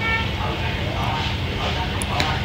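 Steady low background rumble, with a short high-pitched toot right at the start.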